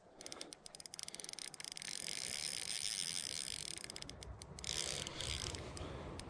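Fishing reel clicking rapidly in runs, with a pause in the middle, while a hooked barbel is played in.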